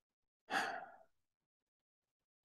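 A man's short breathy sigh, half voiced as a hesitant "I", about half a second in and fading within half a second.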